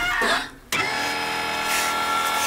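A short vocal snippet, then, about two-thirds of a second in, an edited-in electronic sound effect begins: a held chord of several steady tones.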